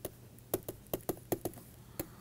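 Stylus pen writing on a tablet: a quick, irregular run of light taps and clicks as the tip strikes and lifts from the surface, forming capital letters.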